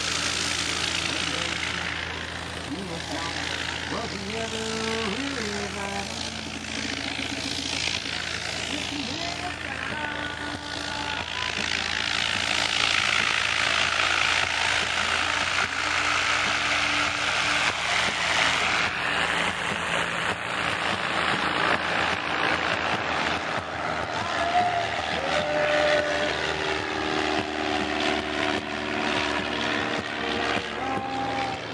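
Light propeller airplane engine running, growing louder about twelve seconds in, with people talking in the background.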